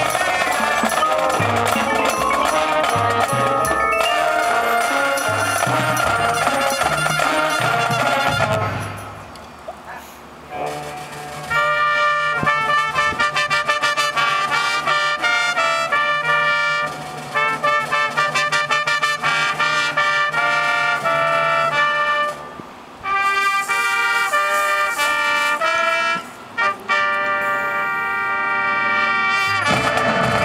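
Marching show band playing live: brass and woodwinds with front-ensemble percussion. About nine seconds in the music drops back for a moment, then returns as held chords broken by a few short pauses.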